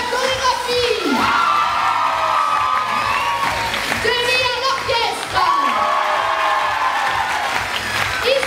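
Crowd cheering and whooping over a general din of voices. Long drawn-out voice calls slide down in pitch about a second in and again past the middle.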